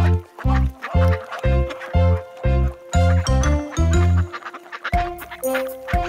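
Bouncy children's-song backing music with a steady bass-drum beat about twice a second, with cartoon duck quacks over it.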